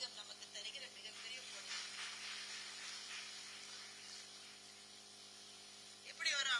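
Faint audience applause, dying away after about four seconds into a low steady hiss.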